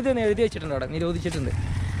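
A voice in drawn-out pitched phrases over a low, steady motorcycle-engine hum.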